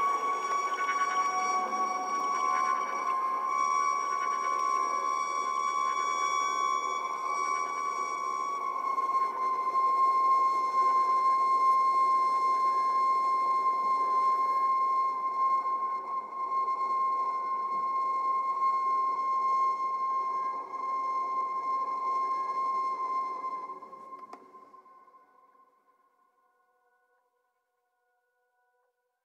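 Slow sustained chamber music for violin, soprano saxophone and EBow guitar: one long held high note with overtones over a faint lower drone. It fades out to silence a little before the end.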